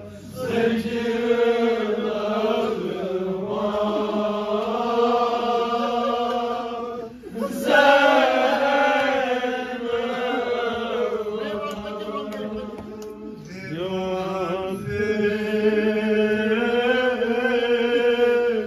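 A nauha, a Shia mourning lament, chanted by male voices in long, drawn-out wavering phrases, the lead voice amplified through a handheld microphone, with a steady low tone held beneath. The phrases break off briefly about seven and thirteen seconds in.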